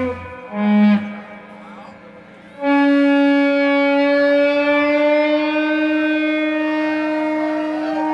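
Electric guitar played live. A short note about a second in, then, after a brief lull, one long sustained note held for over five seconds that slowly bends upward in pitch.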